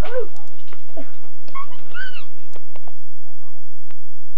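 A domestic cat meowing: one rising-and-falling call right at the start and another about a second and a half in, followed by fainter short calls near the end.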